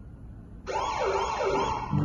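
Recorded police siren wailing rapidly up and down, about three sweeps a second, starting about two-thirds of a second in, as the sound-effect intro of a country song.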